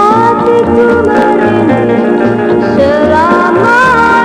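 Music from a 1967 Indonesian pop record played by a small combo: a lead melody with gliding, sliding notes over guitar and a bass line.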